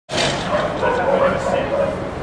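A dog yipping in short, high calls, with people's voices.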